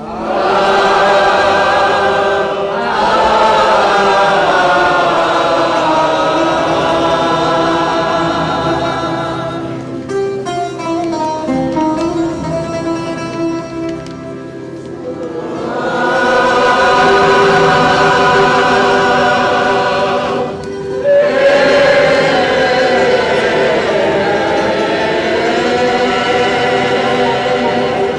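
Mixed choir of men's and women's voices singing in harmony in sustained chords. It thins to a softer passage in the middle, then swells back to full voice, with a short break for breath shortly after.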